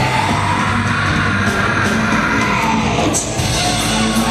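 A hardcore band playing live at full volume, with a screamed lead vocal over the drums and guitars.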